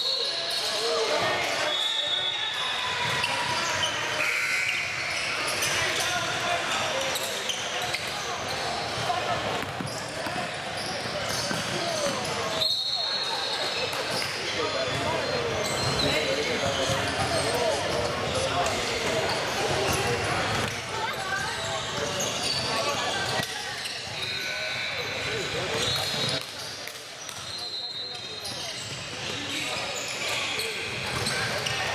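Live basketball game sound in an echoing gym: a ball dribbling and bouncing on the hardwood, sneakers squeaking in short high squeals several times, and players and onlookers calling out.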